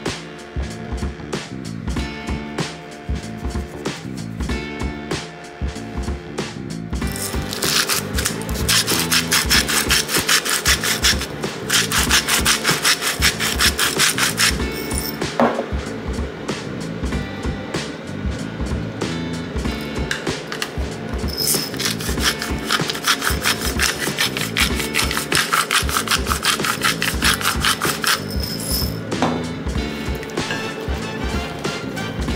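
Hand-twisted salt or pepper mill grinding over a bowl of floured diced beef: two long spells of fast, even rasping, the second starting about two-thirds of the way in. Background music plays underneath.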